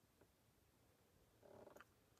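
Near silence: faint room tone with a low hum, and a soft, brief sound a little before the end.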